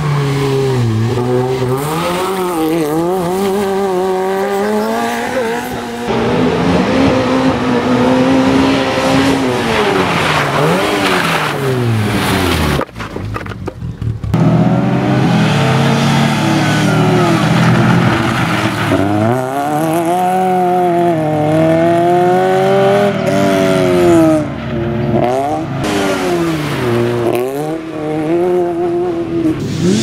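Fiat Seicento rally car's small engine revving hard and dropping off again and again as it is driven through tight corners, with some tyre squeal. The sound breaks off briefly about thirteen seconds in, then the engine picks up again, rising and falling.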